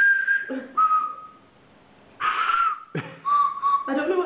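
Small tuned hand-held whistles, one per player, blown in turn to play the notes of a tune: a higher toot at the start, a lower one about a second in, a louder, breathier one about two seconds in, and a lower note near the end blown as two short toots.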